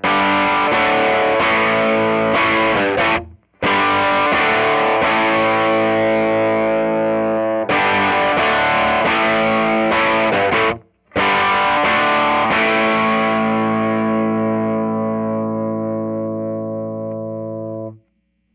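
Overdriven electric guitar played through a Mooer Blues Crab overdrive pedal into a Fender Blues Junior IV amp, miked dry with no reverb. It plays strummed chords with two short breaks, then lets a last chord ring and slowly fade before it is cut off.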